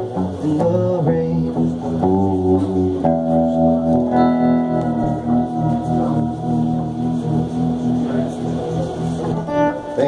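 Electric guitar played live, strumming the closing chords of a slow country ballad. About three seconds in, one chord is left to ring for several seconds, and a last chord is struck near the end.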